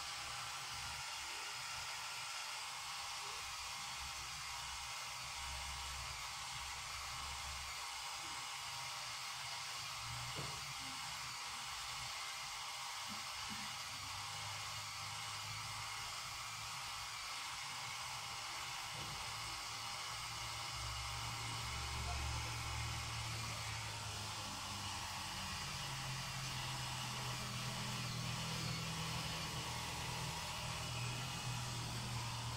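A steady hiss, like a fan or the recorder's own noise, with a faint low hum underneath that shifts in pitch now and then.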